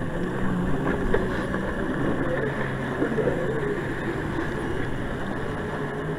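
Fishing kayak under way on a small motor, a steady hum with water and wind noise beneath it.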